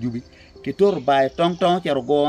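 A man talking in Acholi, pausing briefly near the start; insects chirp steadily and faintly in the background, heard most clearly in the pause.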